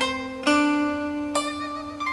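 Background music played on a plucked zither-like string instrument. Ringing notes are plucked about half a second in and again near one and a half seconds, each decaying slowly over a held low note.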